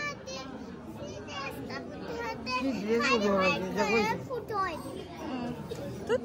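Children's high voices talking and calling over the chatter of a gathered crowd in a large hall.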